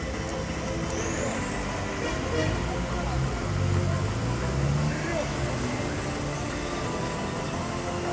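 Car engine running at the start line, its pitch rising briefly around the middle, with spectators talking in the background.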